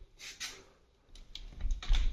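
A wooden door's small plastic latch being worked by hand: light clicks and rattles, a few early on, then a quick cluster with low knocks that is loudest near the end.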